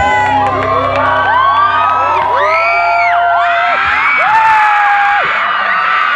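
A studio audience screaming and cheering, many high-pitched cries overlapping, over the last held chord of the backing music, which stops about four seconds in.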